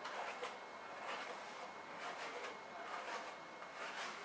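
Hairbrush bristles drawn through long hair in several faint, swishing strokes.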